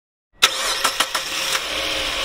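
Sound effect of a car engine starting: silence, then a sudden start about half a second in, followed by a steady hissing noise with a few sharp clicks.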